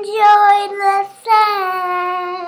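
A young girl singing, with drawn-out notes; the last one is held long and sinks slightly in pitch.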